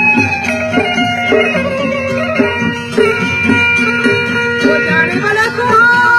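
Live Balochi folk music in the leeko style: a stringed instrument plays held, melodic tones over a steady rhythmic accompaniment. A male singer's wavering voice comes in strongly through a microphone near the end.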